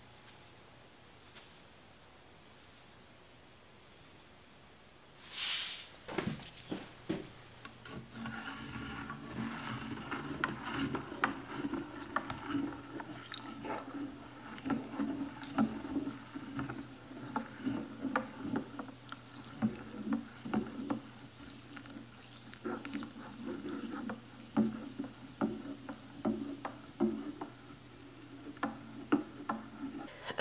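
A plastic spatula stirring sodium hydroxide into water in a stainless steel pitcher, mixing a lye solution: quiet at first, then a short burst of hiss about five seconds in, followed by steady irregular scraping and clinking against the metal.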